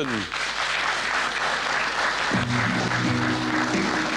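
Studio audience applauding, with the show's music coming in about two and a half seconds in and playing under the applause.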